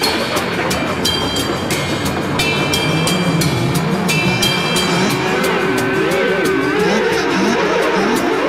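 Drum and bass music playing in a DJ mix, with a fast hi-hat pattern over a bassline. From about five seconds in, a wavering, warbling pitched line comes in over the beat.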